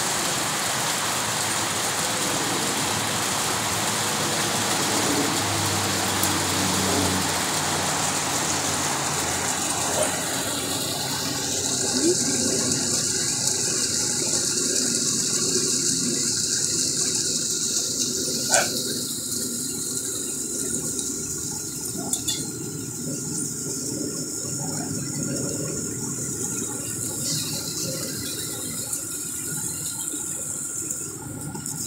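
Small garden-pond waterfall splashing steadily, a continuous rush of falling water. About ten seconds in it thins to a higher, lighter hiss, and a single sharp click stands out a little past halfway.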